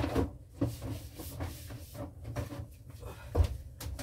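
Knocks, clatters and rubbing from handling and wiping the inside of an open refrigerator. A sharp knock comes right at the start, then smaller clatters and a dull thump about three and a half seconds in.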